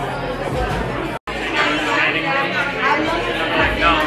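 Several women talking and chattering at once in a busy room. The sound drops out completely for an instant about a second in.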